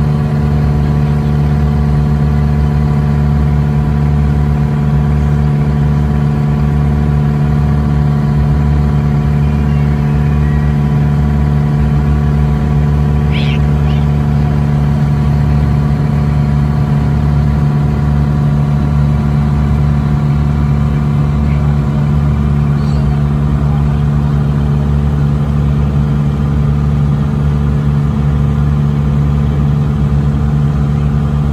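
Engine of a motorized log raft running steadily under way, a constant low drone at an even pitch.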